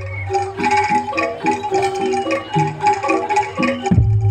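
Javanese gamelan music for jaranan: struck bronze metallophones play a quick repeating melody over a steady beat. A deep gong stroke rings out just before the end.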